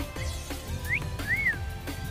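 Background music with two short whistled notes over it about a second in: one rising, then one that rises and falls, a person whistling to a pet parrot.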